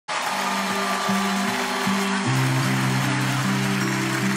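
A band playing the slow instrumental intro to a gospel ballad: sustained chords, changing about once a second, over a steady background wash.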